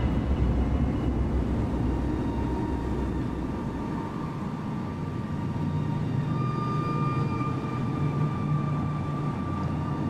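A low rumbling drone in the film score fades over the first few seconds. Thin, steady high tones come in about halfway and hold to the end.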